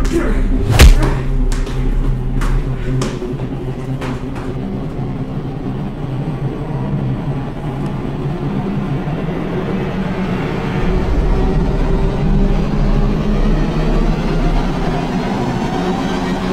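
Horror-film soundtrack: a loud thud about a second in, then a few sharp knocks that fade over the next three seconds, under a low, steady droning score.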